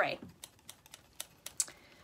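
A wooden folding fan being waved close to the face, its slats giving a few light, irregular clicks, after the falling tail of a spoken word at the start.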